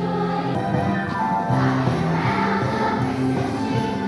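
A large children's choir singing, holding notes in a steady melody.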